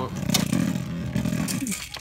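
A Beyblade Burst top spinning in a clear plastic stadium, a steady low whirring rattle with a few sharp clicks, which dies away near the end as it is picked up by hand.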